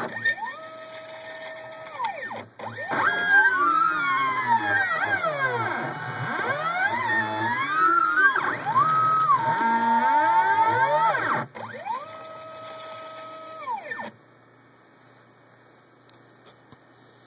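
Stepper motors of a home-built CNC plotter whining as they drive the axes. The pitch rises, holds and falls again with each move, and two tones sometimes glide past each other as two axes move together. They pause briefly twice and stop about fourteen seconds in, leaving a faint hum.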